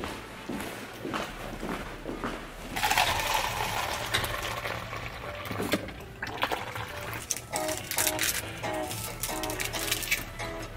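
Coffee pouring from a dispenser into a paper cup: a rushing stream about three seconds in that lasts a second or so, over a low steady hum. Music with repeating plucked notes comes in during the second half.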